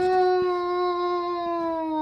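A woman's long, drawn-out vocal 'hmm', held on one steady pitch.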